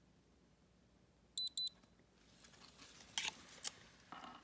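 Two short high electronic beeps in quick succession about a second and a half in, from a handheld spectrometer taking a light reading. A couple of faint clicks follow near the end.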